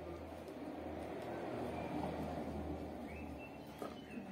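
Faint bird calls over a low, steady background hum, with a light knock near the end.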